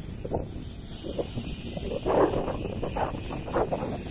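Loaded lorries passing on a highway: diesel engines running and tyres on the road make a steady low rumble, with uneven louder surges, the strongest about two seconds in.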